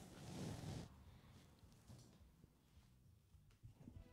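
A brief rustle of a paper gift bag being handled as its seal is pulled open, lasting under a second, then near silence.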